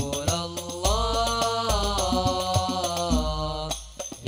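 A group of male voices sings an Arabic devotional song (sholawat) in unison over hand-struck hadrah frame drums (rebana), with deep bass drum strokes about once a second. The voices break off briefly near the end before the next phrase.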